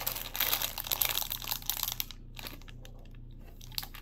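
Clear plastic packaging bags crinkling as they are handled. The crinkling is dense for about the first two seconds, then thins to a few scattered crackles.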